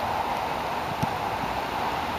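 Steady wind noise on the microphone of an outdoor recording, with a single soft thud about a second in.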